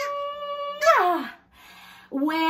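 A woman's voice making a long, drawn-out kiss sound: a hummed 'mmm' held on one pitch, opening about a second in into a 'wah' that falls in pitch.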